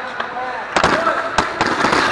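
Hockey sticks and puck clacking in a scramble at the goal crease: two sharp cracks about half a second apart, then a quick flurry of smaller clacks, with players' voices in the ice rink.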